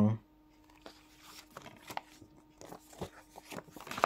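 Light rustling of a folded paper leaflet and small clicks from a plastic DVD case being handled, scattered at first and busier in the second half.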